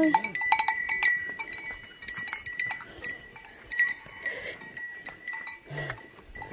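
Bells on walking cattle clanking irregularly, thickest in the first three seconds and sparser after.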